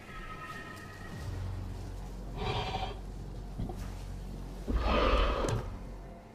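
Designed creature calls for a Hatzegopteryx, a giant pterosaur, over a low rumble. There is one call about two and a half seconds in, and a louder one about five seconds in.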